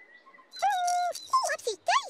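Wordless, voice-like calls from costumed children's-TV characters: about half a second in, one held call, then several quick exclamations that slide up and down in pitch.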